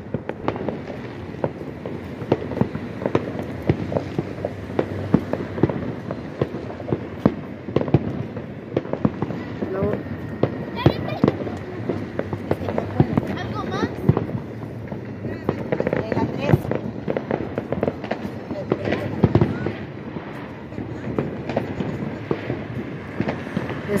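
Fireworks and firecrackers going off all around: a dense, irregular crackle of pops with louder bangs scattered through it, and voices talking now and then.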